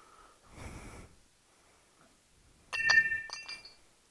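Shards of a smashed ceramic crock-pot insert clinking against each other about three seconds in: several sharp clicks, each with a brief bright ring. A faint scuff comes about half a second in.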